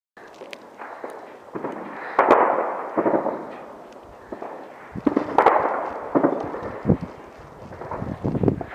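Distant gunfire and explosions from fighting around the airport: a string of sharp cracks and several heavier bangs, each rolling away in a long echo. The loudest come a little after two seconds in and about five and a half seconds in.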